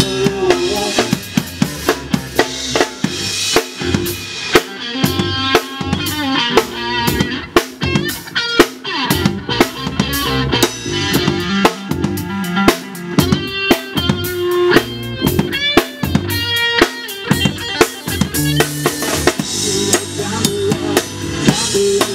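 Blues-rock band playing an instrumental stretch: drum kit keeping a steady kick-and-snare beat under bass guitar and electric guitar notes, with no vocals.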